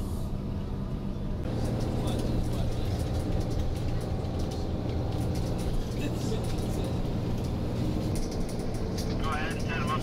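Van engine and tyre noise heard from inside the cab while driving on a snow-covered road: a steady low hum that grows a little louder about a second and a half in.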